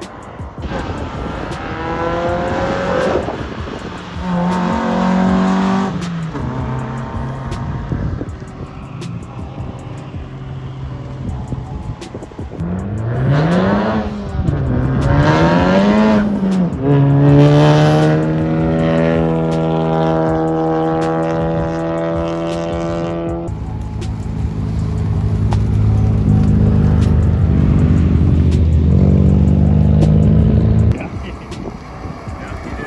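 Car engines revving hard: the pitch climbs and drops several times with gear changes, then holds a high steady rev for about six seconds in the middle. A lower, deeper engine drone fills the last several seconds.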